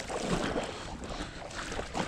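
Water sloshing and splashing close to the microphone, in irregular small knocks, with wind rumbling on the microphone.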